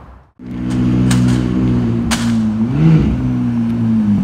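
McLaren 675LT Spider's twin-turbo V8 running low and steady as the car rolls slowly across the lot, with a short rev blip about three seconds in.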